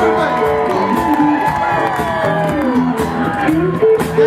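Live band playing a song, with an electric guitar playing lead lines that bend and slide in pitch over a steady beat.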